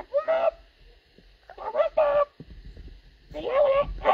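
A person's voice making three short, goose-like honking calls, spaced about a second and a half apart.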